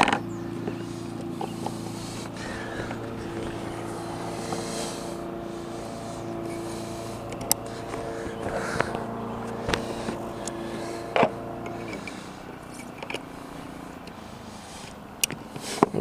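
Plastic MC4 solar cable connectors and inline fuse holders clicking a few times as they are handled and pushed together. Under them, a steady motor-like hum runs and stops abruptly about twelve seconds in.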